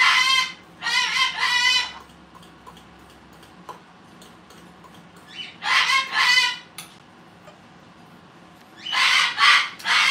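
Parrot calling in three bouts of a few loud, high-pitched syllables each: about a second in, around six seconds in, and again near the end.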